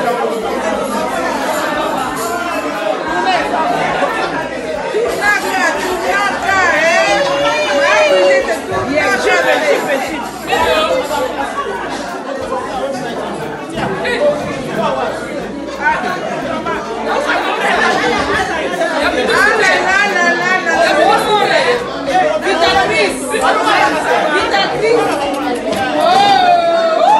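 A group of people chatting at once, several voices talking over one another without a break.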